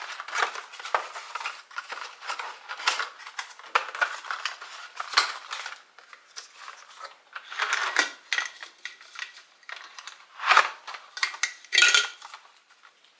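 A cardboard box of coffee capsules being opened and handled: rustling and scraping with a steady run of light clicks and clatters. The loudest clatters come near the end, as capsules drop into a glass jar.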